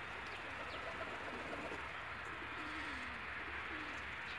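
Domestic pigeons cooing: a few low, wavering coos one after another, over a steady background hiss.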